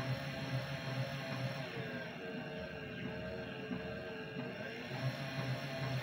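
DC motor driving a gearbox at full speed on a 12 V battery through a speed controller: a steady low hum with a faint, slightly wavering whine.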